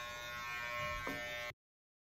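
Electric hair clippers buzzing steadily, with a small click about a second in; the sound cuts off suddenly about one and a half seconds in.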